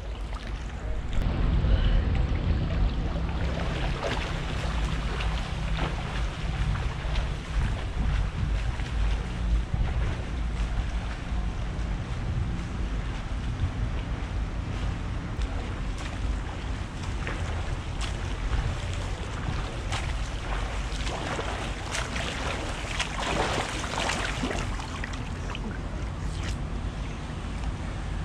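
Swimming-pool water sloshing and splashing against a camera held at the water's surface, over a low rumble of wind and handling on the microphone. The splashing gets busier about three quarters of the way through.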